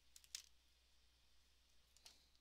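Near silence with low room hum, broken by a couple of faint clicks in the first half-second as art markers are handled.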